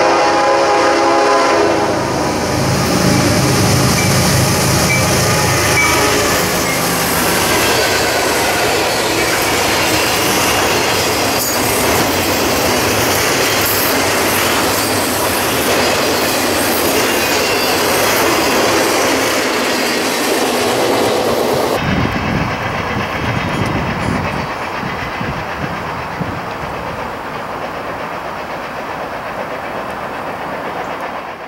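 A GE Evolution-series diesel locomotive sounds a chord horn as it approaches, and its engine rumbles past. Then comes the steady clatter and rumble of flatcars, loaded with track-maintenance machines, rolling over the rails. About 22 seconds in, the sound cuts to a quieter, lower train rumble that fades away.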